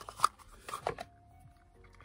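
A small cardboard box and a mirrored metal highlighter compact being handled: a few sharp clicks and rustles in the first second as the compact slides out of its box, then quiet apart from faint steady tones.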